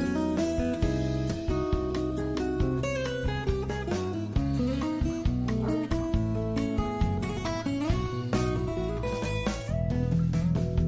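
Background music: plucked and strummed guitar playing a steady melody.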